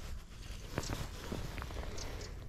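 A few faint, scattered clicks and rustles from handling a spinning rod, reel and monofilament line, over a low, steady outdoor background hiss.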